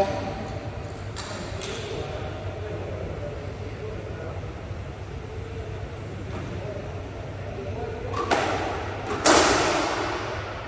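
A squash ball struck by racket and hitting the court walls: two sharp, echoing smacks about a second apart near the end, over the steady hum of the hall and faint voices.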